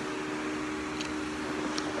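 Steady hum and hiss of a fan or similar appliance running, with a couple of faint ticks.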